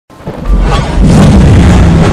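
Intro music opening with a deep boom that swells up out of silence over the first half second and stays loud.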